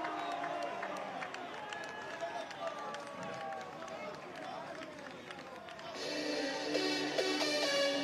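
Men's voices calling out on an open football pitch, then electronic dance music with a steady beat starts about six seconds in.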